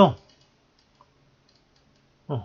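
A few faint, short clicks of a computer mouse being used to hand-write on screen, over near silence, with one slightly clearer click about a second in.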